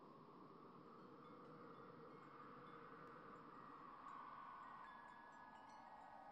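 Near silence: a faint, even hiss, with a few faint steady tones coming in over the second half.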